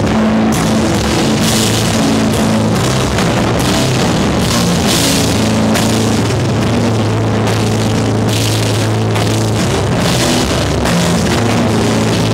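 Hardcore/powerviolence band playing live and loud: heavily distorted guitar and bass holding low notes over drums with repeated cymbal crashes, heard close to the drum kit.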